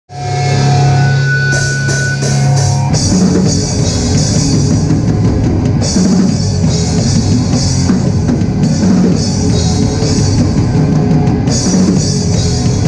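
A hardcore band playing live, with distorted electric guitars, bass and drum kit. A held, ringing chord sounds for about the first three seconds, then the full band comes in with heavy drums and cymbal crashes.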